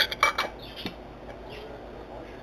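A metal canning lid set on the rim of a glass mason jar and adjusted by hand: a quick cluster of light clicks and scrapes in the first half second, one more small click a little later, then faint handling.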